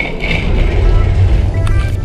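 Wind buffeting a chest- or head-mounted action camera's microphone: a heavy, uneven low rumble that swells about half a second in. Background music plays faintly beneath it.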